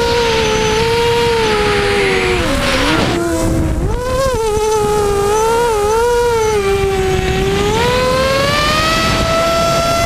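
Electric motors and propellers of a small RC drone, heard from its onboard camera: a loud, buzzing whine that changes pitch with the throttle. It drops sharply about three seconds in, wavers, then climbs again near the end.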